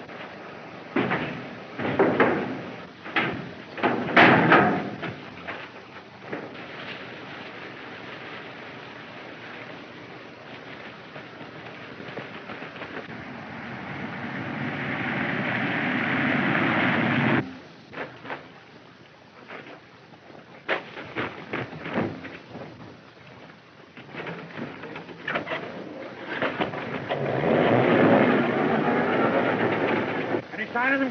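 Film sound effects: punches and scuffling thuds from a fistfight in the first few seconds. A 1930s car's engine then runs and grows steadily louder until it stops abruptly. Near the end the car is running again over rough ground.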